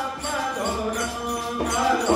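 Devotional Hindu hymn to Krishna sung by a single voice over instrumental accompaniment, with a steady light percussion beat.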